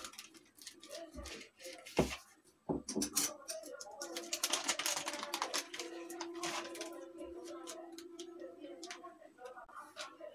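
A wooden rolling pin knocks a few times on the counter as the dough is rolled out inside a folded polythene sheet. The thin plastic sheet then rustles and crinkles as it is peeled back off the rolled fafda dough, over faint background voices.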